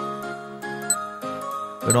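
Quiz background music with held tones and light tinkling notes, with a faint high tick about once a second as the answer countdown runs. A man's voice comes in near the end.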